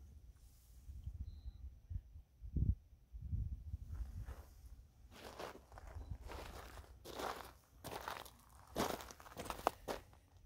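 Footsteps crunching on gravel and rocky desert ground, a step roughly every three-quarters of a second and loudest in the second half, over a low rumble.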